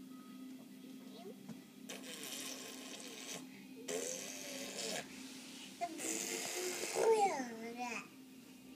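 Baby straining and whimpering in three breathy stretches while pushing over a baby gate, with rising and falling cries that are loudest near the end. A steady low hum runs underneath.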